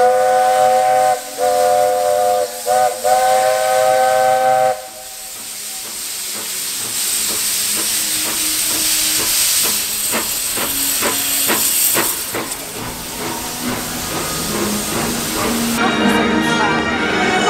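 Walt Disney World Railroad steam locomotive blowing its multi-note chime whistle in three blasts over the first five seconds, the last one the longest. A loud, steady hiss of steam venting from the engine follows.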